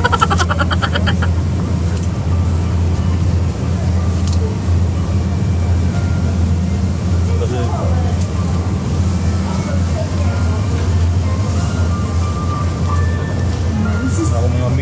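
Supermarket ambience: a steady low hum with faint voices in the background. A burst of laughter trails off in the first second.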